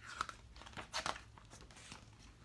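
A paperback picture book's paper page being turned: a few short, soft rustles and crinkles of paper.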